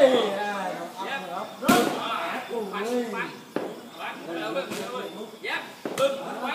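Gloved punches and kicks smacking into Thai pads: several sharp impacts, the loudest a little under two seconds in, with voices in between.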